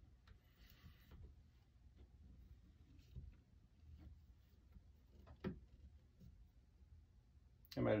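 Faint handling sounds of whipping thread being wound around the end of a leather golf grip: a brief soft rustle early on and a few light clicks, the clearest a little past halfway.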